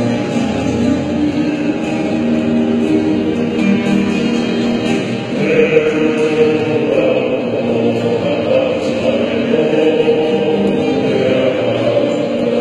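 Tongan hiva kakala song: a large men's group singing together in harmony, backed by strummed acoustic guitars. About five seconds in, the singing swells fuller and louder, with a higher voice coming in above the group.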